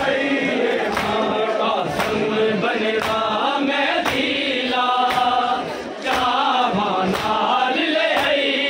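Male mourners chanting a noha (Shia lament) together, with chest-beating (matam) in unison slapping about once a second.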